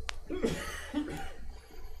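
A single sharp click at the start, then a short, breathy cough lasting under a second.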